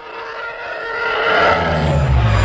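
Film spaceship fly-by sound effects of a TIE fighter and the Millennium Falcon: a howling engine whine that grows steadily louder, joined about halfway through by a deep rumble that falls slightly in pitch.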